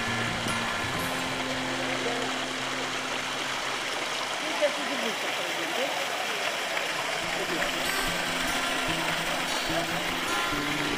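Steady rush of fountain water splashing into a pond, under background music with soft held low notes in the first few seconds and again near the end. A single sharp tap sounds about halfway through.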